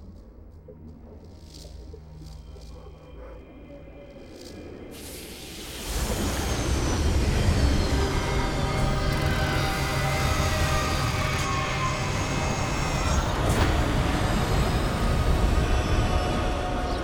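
Film score over a quiet low rumble that, about six seconds in, swells suddenly into a loud sci-fi engine drone for a hovering flying war machine, with falling whine tones over a deep rumble.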